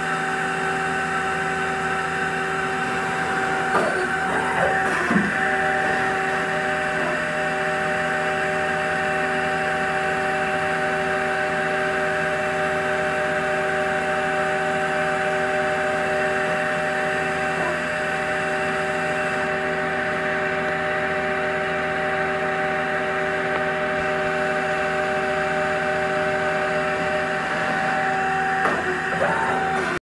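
2005 Mazak QT Nexus 200M CNC turning center running under power, with a steady hum and several steady whining tones. A few short clicks and clunks come as the tool turret moves, near the start, about a third of the way in, past halfway and near the end.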